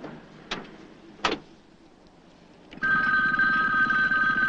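Telephone ringing: a loud, steady two-tone ring with a rattle under it, starting near the end. It is preceded by two brief knocks in the first half.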